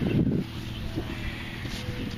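Wind buffeting the microphone as a steady low rumble, with a louder buffet in the first half-second.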